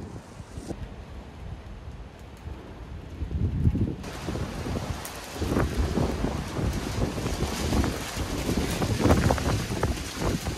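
Gusty wind buffeting the microphone: a low rumble that rises and falls, with stronger gusts in the second half.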